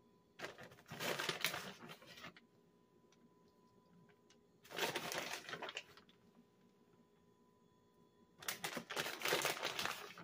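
Plastic bag of shredded cheddar crinkling in three separate bursts as a hand goes into it for cheese.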